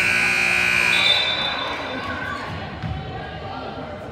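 A loud, steady high signal tone lasting about a second, the kind that stops play in a basketball game. A shorter, higher tone follows it, over crowd chatter in the gym.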